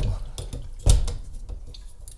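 A portable dishwasher's hard plastic quick-connect hose coupler knocking and clicking against a chrome kitchen faucet spout as it is fitted on. There is one sharp knock about a second in, among a few lighter clicks.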